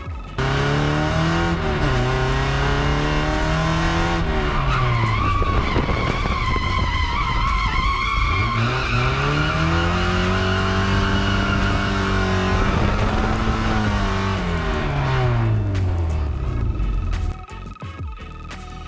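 Drift car's engine revving hard, its pitch dropping and climbing again several times, with tyres squealing through the middle of the slide. The sound starts and cuts off abruptly.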